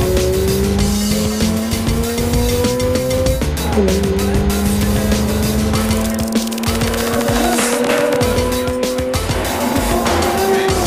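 Mazda RX-8's twin-rotor rotary engine pulling hard under acceleration, heard from inside the cabin: the revs climb steadily, drop sharply at an upshift about three and a half seconds in, then climb again until another shift near the end.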